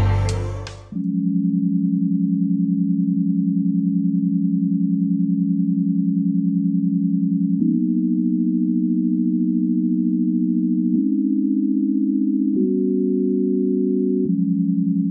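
A plain sine-wave synth pad plays a low, steady chord of pure tones, changing chord three times in the second half with a faint click at each change. The last chord adds a higher note. A musical sound from before fades out in the first second.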